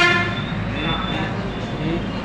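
A vehicle horn sounds once, a short steady-pitched honk that ends a fraction of a second in, followed by street traffic noise and background chatter.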